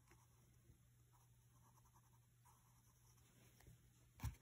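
Faint scratching of a graphite pencil on paper, a few short drawing strokes, against near silence.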